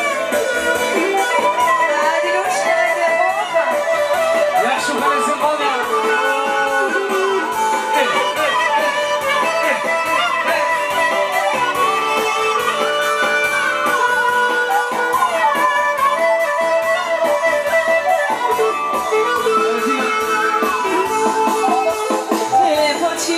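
Live band playing Albanian folk dance music, with a violin carrying an ornamented, sliding melody over plucked strings.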